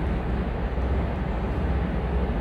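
Steady low background hum with a faint hiss: room noise on the recording, no other event standing out.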